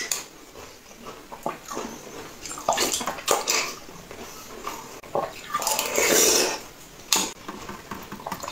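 Close-miked eating sounds: a metal spoon scooping soft purple jelly from a glass of liquid, with short clicks of the spoon against the glass and wet slurping and chewing. The longest and loudest slurp comes about six seconds in.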